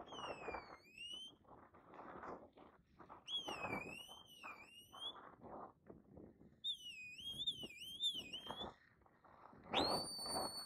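A sheepdog handler's whistle commands to a working dog: three separate whistled calls, the first dipping then rising, the next two warbling up and down, then a long, high, held whistle starting near the end.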